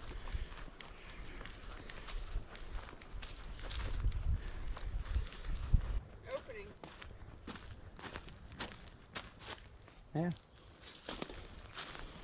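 Footsteps crunching through a thick layer of dry oak leaves on a trail at a steady walking pace, with a low rumble in the first half. Two brief voice sounds come about halfway through and near the end.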